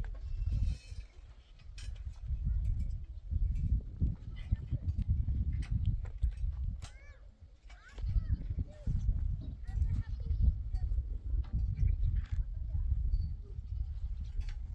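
Sheep bleating a few times near the middle, over a low rumble that comes and goes. Scattered light clicks and taps from hands working on the steel rebar joists.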